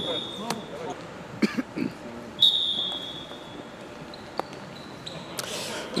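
Futsal ball kicks and bounces on a hard indoor court, a few sharp knocks, with players' voices echoing in the sports hall. About two and a half seconds in, a steady high whistle sounds for about a second.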